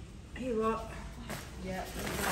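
Women's voices: a short vocal sound about half a second in and a spoken "yeah" near the end, with a faint tap between them over a low room hum.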